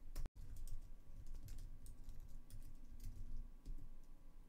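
Typing on a computer keyboard: a run of quick, irregular keystrokes as a terminal command is entered. The sound drops out completely for a split second just after the start.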